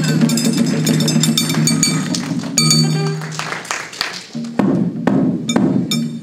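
Chindon-ya street band music: the chindon drum rig's small drums and brass gong struck in a beat of sharp hits and metallic clinks, with a big gorosu bass drum and a saxophone holding low notes. The playing thins briefly about four seconds in, then picks up again.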